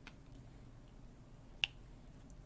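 A single short, sharp plastic click from a diamond-painting drill pen working at its drill tray, about one and a half seconds in, with a fainter tick at the start.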